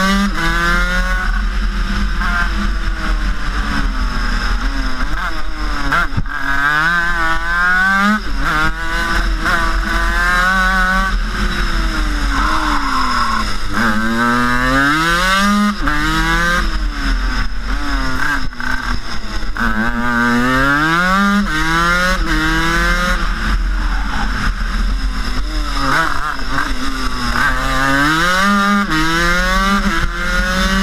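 Rotax 256 twin-cylinder 250cc two-stroke superkart engine at racing speed, its pitch climbing in short ramps, dropping back and climbing again over and over as the kart accelerates out of corners and backs off into them. Heard from a helmet-mounted camera, with a steady low wind rumble beneath.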